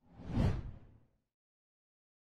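A single whoosh sound effect marking a title-card transition. It swells quickly, peaks about half a second in and fades away within about a second.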